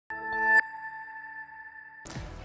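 Short electronic music sting of a television news ident: a chord swells for about half a second and breaks off, leaving a high tone ringing on quietly.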